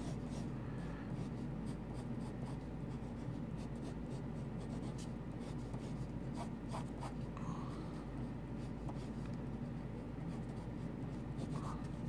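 Pencil lead scratching on paper as a head is sketched, faint and steady, with a few sharper scratches.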